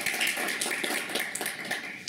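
A small audience applauding: a dense patter of hand claps that ends near the close.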